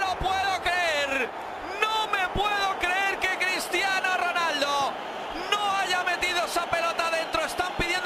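Men talking, as in match commentary, over stadium crowd noise, with a few short knocks.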